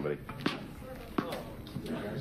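Tennis ball bouncing on a hard stage floor, two sharp bounces about three quarters of a second apart, as a serve is set up.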